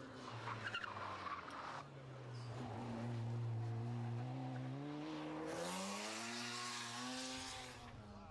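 Mk2 Ford Escort being driven hard on a tight course: the engine holds a steady note, then rises as the car accelerates about five and a half seconds in. Tyres squeal briefly near the start as it corners.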